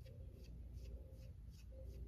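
A paintbrush dragged in repeated short strokes across a wooden board, brushing on background paint: soft scratchy swishes about two or three times a second.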